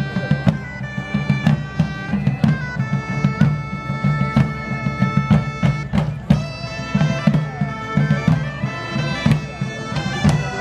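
Medieval-style folk band playing an instrumental: bagpipes carry the melody over a steady low drone, with regular strokes on several long rope-tensioned field drums.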